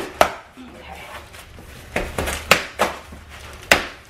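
Scissors cutting through packing tape on a cardboard box as it is opened. About five sharp cracks and snaps come one by one, with short quiet gaps between.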